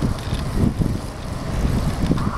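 Wind buffeting the microphone of a camera on a moving bicycle: an uneven, gusting low rumble.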